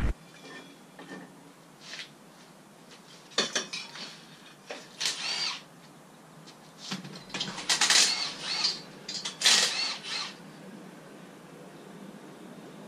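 A handheld power tool running in several short bursts, its pitch rising and falling with each pull of the trigger, as bolts are undone on an engine mounted on an engine stand.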